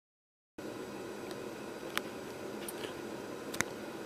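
A Coleman 200A infrared military lantern burning with a steady hiss, starting about half a second in, with two faint clicks near the middle and near the end.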